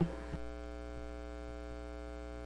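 Steady electrical mains hum with a buzz of many even overtones, with two light clicks in the first half second.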